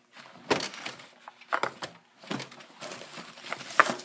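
Fabric and a cloth bag being rummaged through by hand, making irregular rustling bursts with a few sharper knocks. The loudest come about half a second in and just before the end.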